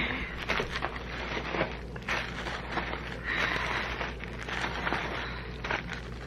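Plastic bubble wrap crinkling and crackling as bubble-wrapped bottles are lifted out of a box and set down on a table, with a steady rustle and many small clicks.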